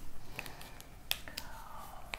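A few light, sharp clicks from a whiteboard marker being handled and uncapped, the sharpest about halfway through.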